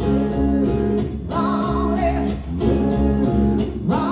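Live rock band playing: electric guitar and a band backing a female lead singer's voice.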